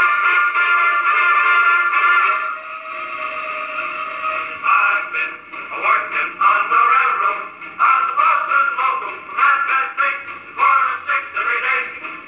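HMV Zealand acoustic gramophone playing a dance-band record with a vocal: thin, midrange-only sound with almost no bass or treble. Held band chords give way about four seconds in to choppier phrases with the singer.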